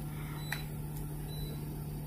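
Steady low electrical hum from a flex-cable bonding machine, with two small clicks about half a second and a second in.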